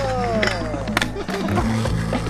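Skateboard on concrete, with a sharp board clack about a second in, over a music soundtrack with a steady bass line.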